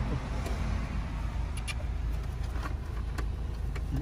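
A few sharp plastic clicks and snaps as a car side-mirror assembly is pried apart by hand, the sharpest about three seconds in, over a steady low rumble.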